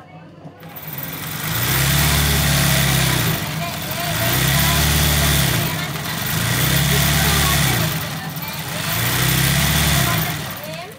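Electric sewing machine stitching embroidery on fabric held in a hoop. It runs in four spells of about two seconds, the motor's hum rising as it speeds up and falling as it slows between spells.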